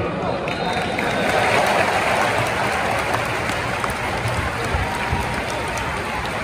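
Large football stadium crowd: a steady din of many voices with clapping, swelling a little between one and three seconds in.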